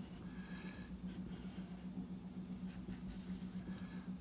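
Wooden graphite pencil scratching on paper in a series of short strokes as lines are drawn, over a faint steady low hum.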